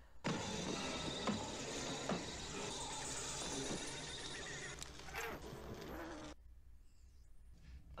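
Film sound effects for a wrecked android body: a dense, steady hiss and crackle with scattered small knocks and faint pitched sounds, which drops away about six seconds in and leaves only faint sound.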